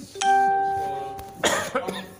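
A single chime struck once, ringing with a clear pitched tone that fades over about a second, followed about a second and a half in by a loud, short noisy burst.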